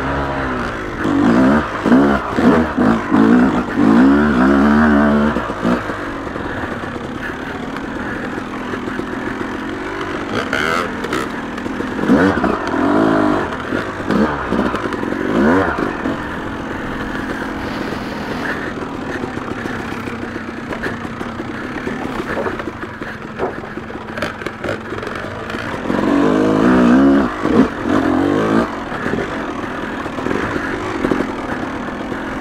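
Yamaha YZ250 two-stroke dirt bike engine on a trail ride, revving up and down in quick bursts, then holding a steadier pitch through the middle before another run of revs near the end.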